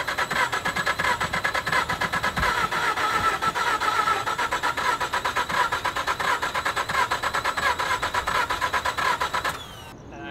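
Mazda RX-8's rebuilt two-rotor Renesis rotary engine being cranked over by its starter on its first start after the rebuild, an even, rapid rhythmic pulsing without catching. The cranking stops abruptly shortly before the end.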